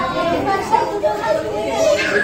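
Several people talking at once: overlapping voices chattering with no one voice standing out.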